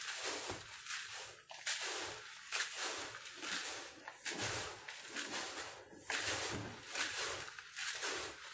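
Hands stirring and turning oil-coated rolled oats, seeds and nuts in a plastic bowl: a repeated rustling swish with each stroke, about one or two a second.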